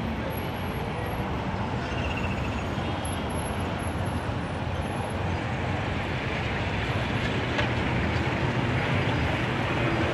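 Steady street traffic: motorcycle and minibus engines running and passing close by, growing a little louder in the second half.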